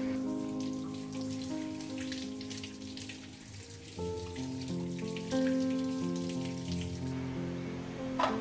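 Water running from a kitchen tap onto a bunch of grapes and splashing into a stainless steel sink, stopping suddenly about a second before the end. Background instrumental music with sustained notes plays throughout.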